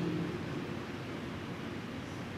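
Steady background hiss of the room and microphone during a pause in speech, with the last of a man's spoken word dying away at the very start.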